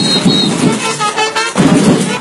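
Samba batucada percussion playing loudly, with a high whistle tone at the start and pitched horn notes, like trumpets, coming in from about a second in.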